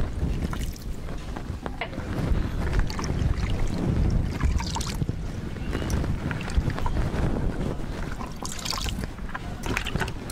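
Wind rumbling on the microphone, with scattered rustles and light clicks of hands working chopped green leaves in plastic buckets.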